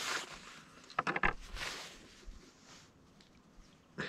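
Faint handling sounds of a bird being ringed: rustling, and a quick cluster of small clicks about a second in.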